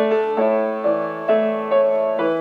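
Grand piano played solo: notes and chords struck about every half second, each left to ring and fade before the next.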